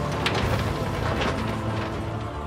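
Deck noise of a crab boat: king crab tumbling out of a tipped crab pot onto the steel sorting table, with a few scattered clattering knocks over a steady machinery drone.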